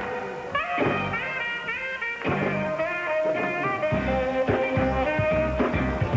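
Saxophone playing a live solo melody with bending notes over a band of electric bass, drums and keyboards, holding one long note through the middle.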